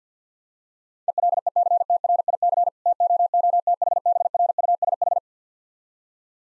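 Morse code at 50 words per minute, a single pure tone of about 700 Hz keyed in rapid dots and dashes, spelling "ELECTRIC TOOTHBRUSH". It starts about a second in, runs for about four seconds, and has a brief word gap about a third of the way through.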